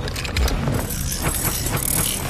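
Mechanical sound effects of an ornate fantasy device opening up: a rapid run of metallic clicks and ratcheting over a low rumble and a high shimmer.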